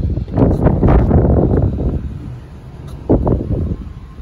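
Wind buffeting the microphone, heaviest in the first two seconds, with a short knock about three seconds in.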